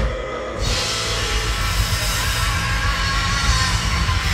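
Live rock band playing loud: electric guitars and drum kit together, the sound growing fuller and brighter about half a second in.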